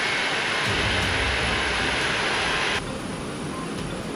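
Jet aircraft's engines running as it taxis, a steady loud rushing hiss; a little under three seconds in it drops to a quieter hiss.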